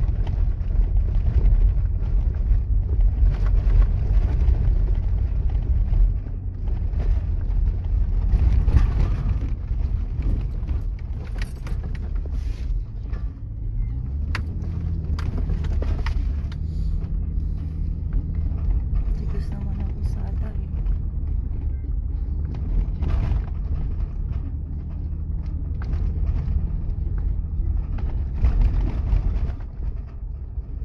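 Car driving over rough desert sand, heard from inside the cabin: a steady low rumble of engine and tyres with scattered knocks and rattles. About halfway through a steady engine hum comes in.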